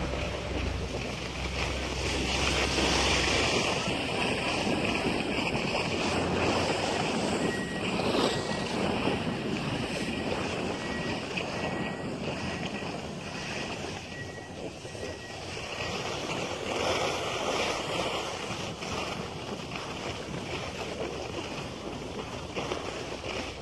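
Wind buffeting the phone microphone, a steady rushing noise that swells and fades, with a low hum that stops about three and a half seconds in.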